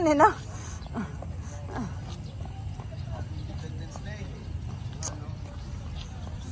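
Street ambience while walking: a steady low rumble of wind on the microphone, with faint footsteps on concrete and faint distant voices.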